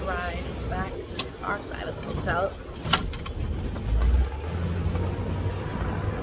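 Road and wind noise from a moving open-sided shuttle cart, a steady low rumble, with a deeper rumble swelling about four seconds in.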